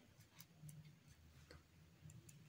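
Near silence: faint room hum with a few faint, irregular clicks.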